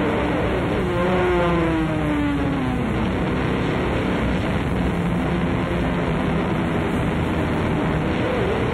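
Live band playing a thick, heavily distorted drone of electric guitar and bass. A pitched note slides downward about a second in and fades by three seconds.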